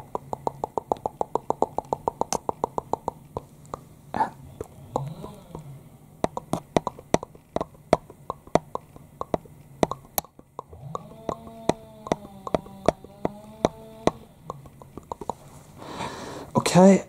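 A pen tip tapping against the camera in quick succession, about seven taps a second for the first three seconds, then slower, irregular taps. A short hummed tone comes in the middle and again in the latter half, over a steady low background hum.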